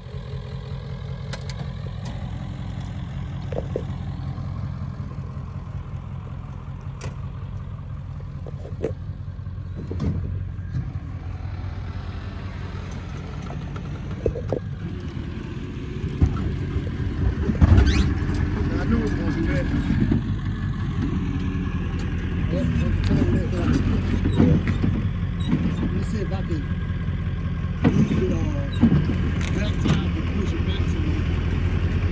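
A vehicle engine idling steadily, with a few sharp metallic knocks. From about halfway through it gets somewhat louder and busier.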